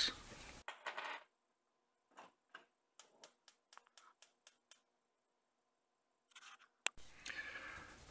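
Near silence broken by a run of faint clicks, about four a second, lasting a couple of seconds, then one sharper click near the end.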